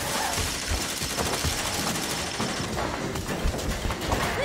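Rapid gunfire from a film soundtrack: a long run of repeated shots.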